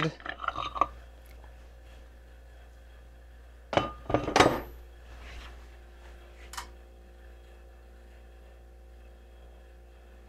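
Angling AI aluminium bait-mold halves clinking as the mold is pulled apart and handled: a quick cluster of sharp metallic clinks about four seconds in, then a single lighter click a couple of seconds later.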